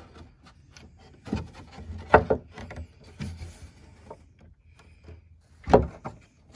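Wood handling noise as a carriage bolt is worked through a tight-fitting hole in a wooden leg and the cornhole board frame: scattered knocks and rubbing, with sharper knocks about two seconds in and near the end.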